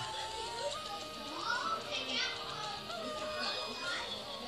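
Cartoon soundtrack played from a screen and picked up by the camera's microphone: a character's long, drawn-out cry of "Nooooo" over music, with other voices.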